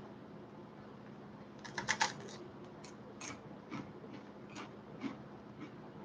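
Crunching of a rye crispbread cracker (knäckebröd) being bitten and chewed: a quick cluster of crisp cracks about two seconds in, then single crunches about every half second.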